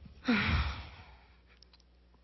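A woman's breathy, voiced sigh that falls in pitch and fades away within about a second.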